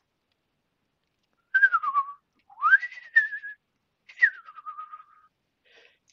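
A person whistling three sliding notes, each about a second long with short gaps between them. The first slides down, the second swoops up and then holds, and the third drops and then holds.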